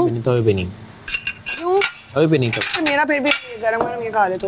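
Plates and cutlery clinking and clattering at a meal table, among background voices.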